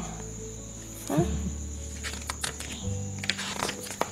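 A paper picture-book page being turned, with a few short crinkles and taps in the second half, over a steady high-pitched whine and a low hum.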